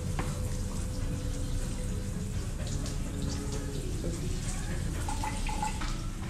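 Water spraying steadily from a handheld hose nozzle onto a dog's coat and splashing into a tiled wash tub.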